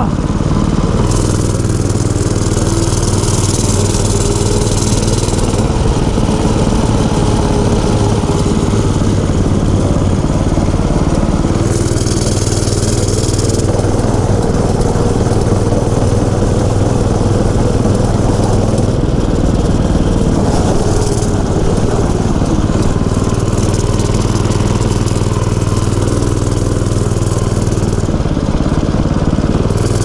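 Mini bike's small engine running steadily under throttle as it is ridden, a continuous drone, with two stretches of added hiss, a few seconds in and near the middle.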